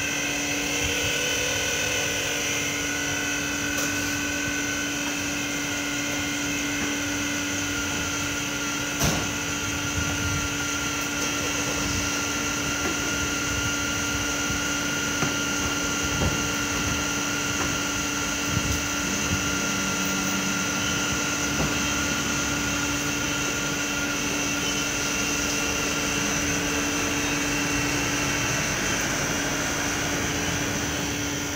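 LPG forecourt dispenser pump running with a steady, even hum while gas is pumped into a vehicle's LPG tank, which is not yet full. A single sharp click comes about nine seconds in.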